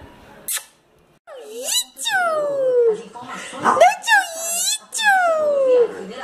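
A small white dog whining in a run of long, drawn-out cries, most of them sliding down in pitch.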